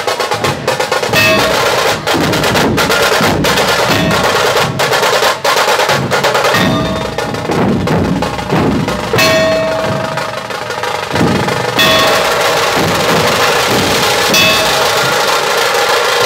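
A dhol tasha ensemble playing a loud, fast rhythm: many large dhol barrel drums struck with sticks, with the rapid strokes of tasha kettle drums over them.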